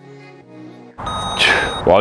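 Soft background music, then about a second in a loud electronic interval-timer beep: one high steady tone lasting most of a second, marking the end of the work interval. A man's voice starts near the end.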